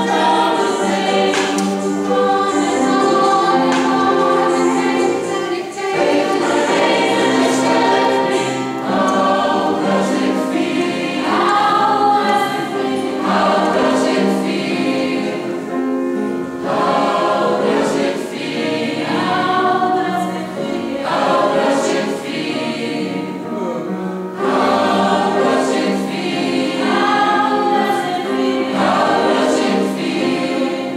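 Mixed choir of men's and women's voices singing a song in parts, holding long chords.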